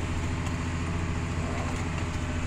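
Farm tractor's diesel engine running steadily, a low even drone heard from inside the cab.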